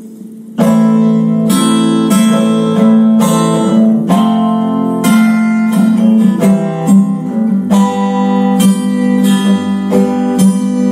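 Acoustic guitar strummed in a down-up-up-down pattern, playing the song's intro chords A minor, F, C and G; the strumming starts about half a second in.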